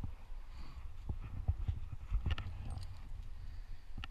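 Irregular hollow knocks and scuffs of a tree climber's boots and gear against the branches of an ash tree, over a low rumble on the helmet-mounted microphone.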